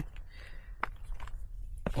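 Footsteps on a stony gravel mountain path: a few separate crunching steps about a second apart, over a low steady rumble.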